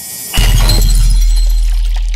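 Title-card sound effect: a rising whoosh leads into a loud glass-shatter hit about a third of a second in. Under the hit a deep boom rings on and slowly fades.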